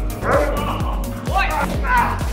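A German Shepherd barks about three times over background music with a steady beat. The barks come from a protection dog lunging at and biting a man's arm.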